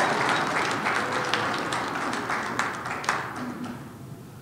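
Audience applauding, the clapping thinning and fading away over about four seconds.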